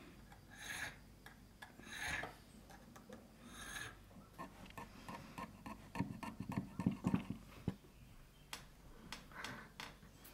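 Needle file rasping on the bit of a brass key blank in slow strokes, about one every second and a half. Past the middle comes a louder run of metallic clicks and knocks as the brass key is fitted into the old iron lock case.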